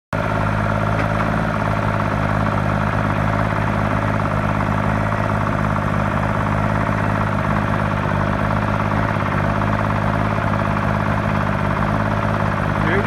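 Timberjack 225 log skidder's diesel engine idling steadily, its stuck throttle now freed.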